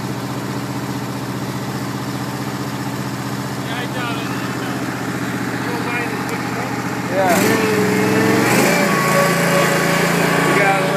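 Exmark Lazer Z zero-turn mower engine running steadily as the mower is driven, heard from the seat. About seven seconds in it grows louder and its pitch shifts.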